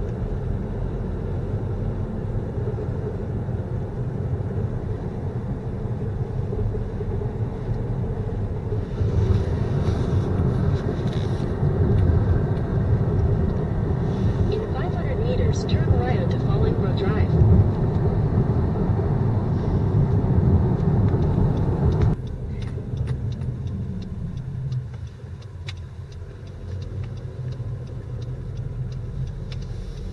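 Car road and engine noise heard from inside the moving car: a steady low rumble that grows louder for a stretch in the middle, then drops off suddenly about two-thirds of the way through.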